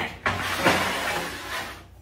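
A heavy steel plate sliding across another steel plate: a long scrape of steel on steel, with a knock about two-thirds of a second in, as the top plate is pushed into line.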